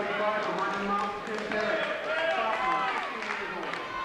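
Indistinct talking voices, with no words made out.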